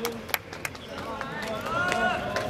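A few sharp claps in the first second, then raised voices shouting across a baseball field.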